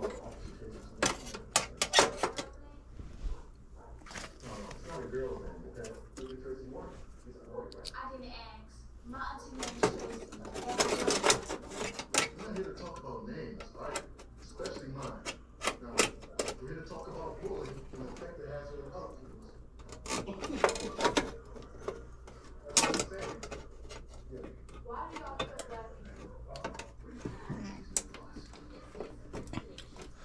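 Irregular clicks and light rattles of hands working at the wires of a replacement furnace control board inside the sheet-metal cabinet, with indistinct speech behind them.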